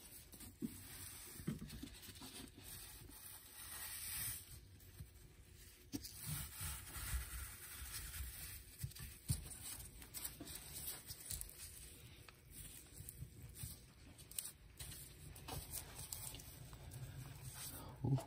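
Faint rustling and scratching of woven exhaust heat wrap handled with nitrile-gloved hands while a stainless tie clamp is threaded around it, with scattered small clicks and a louder rustle about four seconds in.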